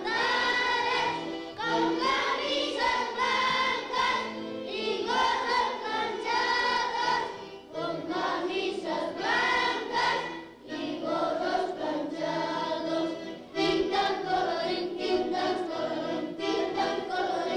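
A group of young schoolchildren singing a song together in chorus, in phrases a few seconds long with short breaks between them.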